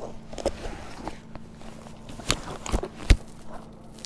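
Close handling noises as a caught crappie is put on a fish stringer while wading: several sharp clicks and knocks, the loudest about three seconds in.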